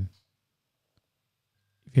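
Near silence: a gap of dead silence between two spoken phrases of voice-over, with one faint tick about a second in. The voice cuts off just after the start and comes back just before the end.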